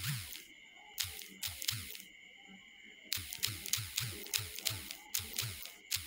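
Taps while typing on a smartphone's on-screen keyboard. A few spaced clicks come first, then a pause of about a second, then a quicker run of taps at roughly three or four a second.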